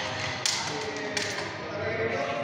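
Rapier blades meeting in sparring: two sharp metallic knocks, about half a second in and again just past one second, the first with a brief ringing tail.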